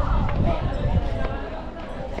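Nearby people talking, with several low thumps underneath the voices.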